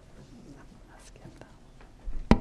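Faint low voices, like whispering, over quiet room tone, with a couple of soft brief rustles.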